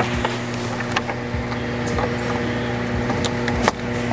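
A steady low hum runs throughout, with a few faint clicks and knocks as a cable is handled under a car's dashboard.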